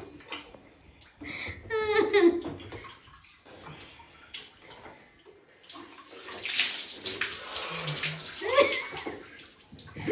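Water poured from a plastic dipper (tabo) over a person's head and body, splashing down in the shower, from about six seconds in for a few seconds. A person's voice is heard briefly about two seconds in and again near the end.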